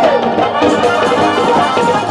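Harmonium playing a sustained melodic instrumental passage in a Bengali folk song. The tabla's deep, pitch-bending bass strokes drop out for this stretch.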